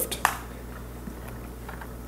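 Small cartridge-reloading parts handled on a bench: a few sharp light clicks just after the start, then faint scattered ticks over a steady low hum.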